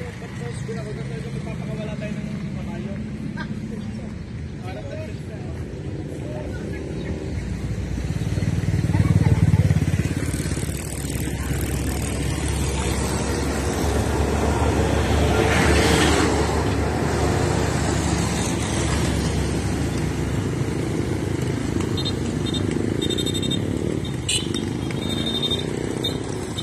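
Roadside motor traffic: motorcycles and motorcycle-sidecar tricycles passing, with a low engine rumble. It swells loudest about nine seconds in and again around sixteen seconds.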